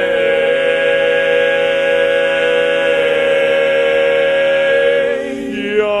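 Barbershop quartet of four men singing a cappella in close four-part harmony, holding one long chord for about five seconds, then moving into the next phrase near the end.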